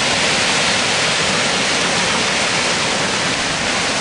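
Floodwater of a swollen brook pouring over a small waterfall: a loud, steady rush of churning white water.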